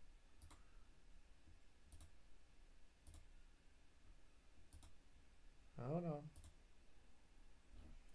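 Near silence with a few faint computer-mouse clicks spread out about a second apart, and a short wavering voice sound, like a brief hum, about six seconds in.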